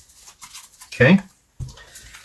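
A deck of tarot cards being handled and shuffled: soft, faint rustling and flicking of card against card, with a spoken word about a second in.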